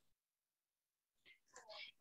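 Near silence over a video call, with a faint, soft voice starting near the end.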